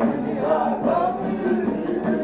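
A bağlama (long-necked Turkish saz lute) played live, plucked and strummed, under singing of a Turkish folk song (türkü), with the sung line wavering and ornamented.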